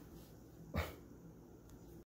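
A kitten gives one short, sharp yowl about three quarters of a second in, against quiet room tone.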